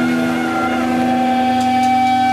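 Electric guitar amplifier drone: a held note rings on steadily while a higher feedback tone swells in about half a second in and holds.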